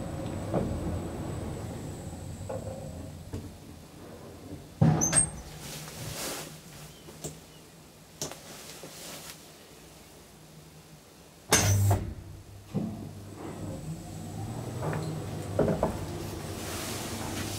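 1962 KONE elevator running with a low steady hum, broken by two loud clunks of its doors and mechanism, about five seconds in and again near twelve seconds, with a few lighter knocks between.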